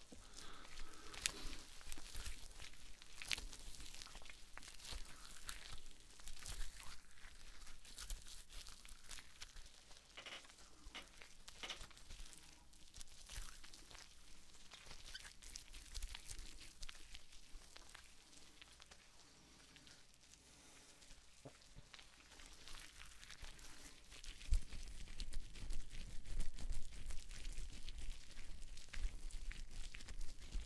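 Faint crinkling and crackling handling sounds with scattered small clicks, as hands work objects close to a sensitive microphone; sparse and quiet in the middle, busier near the end.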